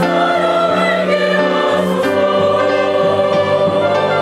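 Church choir singing a hymn with orchestral accompaniment, holding long sustained notes over strings and other instruments.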